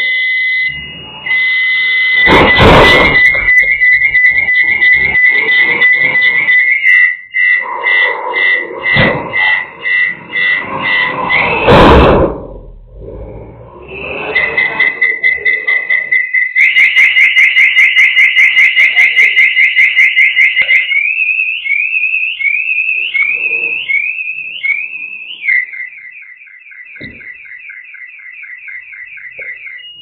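A high whistling tone that goes through changing patterns: steady, then pulsing, a fast warble, a string of rising chirps, and rapid pulses near the end. Two loud crashes come through it, about two and a half and twelve seconds in.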